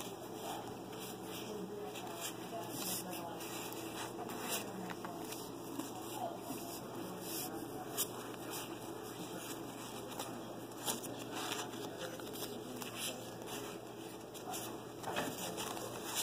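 Pokémon trading cards being handled and slid across one another in the hand, making faint rustles and scattered light clicks over steady room noise.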